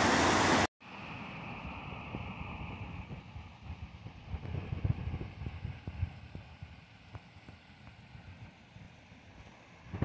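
Loud, steady rushing of water over a rocky cascade, which cuts off abruptly under a second in. After that, a much quieter low rumble of wind on the microphone, gusting unevenly and fading toward the end.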